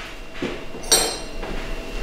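A spoon clinking against a glass mug while a drink is stirred: a soft knock about half a second in, then one sharp clink about a second in.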